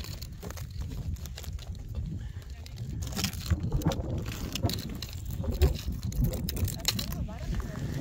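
Low, steady wind rumble on the microphone, with faint voices of people talking in the background and a few light clicks.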